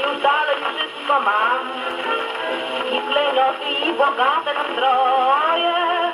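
A young woman singing a 1930s Polish foxtrot with a dance orchestra, played from a worn shellac 78 rpm record on a portable gramophone. The sound is narrow and thin, with no high treble, and carries faint surface hiss and a few clicks from the worn disc.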